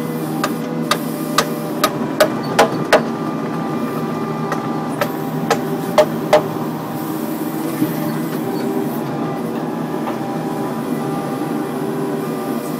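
Kubota mini excavator's diesel engine running steadily while the bucket digs and moves dirt and stone. About a dozen sharp knocks come through the first eight seconds or so, most tightly bunched in the first three seconds.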